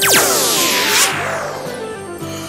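Magic-spell sound effect: a fast downward swoop followed by shimmering, chiming tones, over background music.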